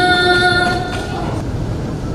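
A woman's melodic Quran recitation (tilawah) through a microphone: she holds a long high note for about the first second, and it fades into a pause of steady background noise.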